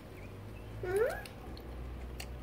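A single short vocal sound sliding up in pitch, about a second in, over a faint steady low hum.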